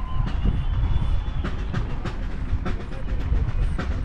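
Outdoor ambience recorded while walking: a steady low rumble of wind buffeting the microphone, with a walker's footsteps on a concrete path clicking about twice a second.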